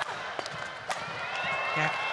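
Badminton rally on an indoor court: rackets striking the shuttlecock a couple of times and shoes squeaking on the court floor. Crowd noise builds toward the end as the rally is won.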